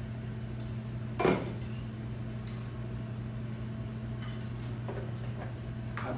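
Cookware being handled: a metal pan lid and pans clink, one sharp clink about a second in and a few lighter clicks after it, over a steady low electrical hum.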